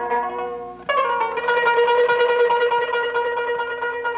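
Kanun, a plucked trapezoidal zither played with finger picks, comes in sharply about a second in with fast repeated plucking around one note. Before that, a held note dies away.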